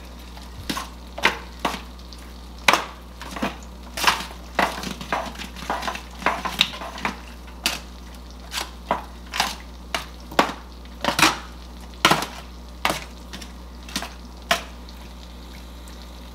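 A metal utensil scraping and tapping in a disposable aluminium foil pan while cooked penne and butter are stirred together, with a crinkle of the foil. There are irregular short scrapes and clicks, about one or two a second.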